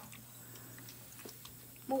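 Kitchen faucet running as a thin trickle into a stainless steel sink, faint and steady, with a low steady hum under it and a couple of light clicks.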